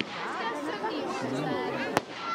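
Crowd of spectators chattering over one another, with a sharp firework bang right at the end.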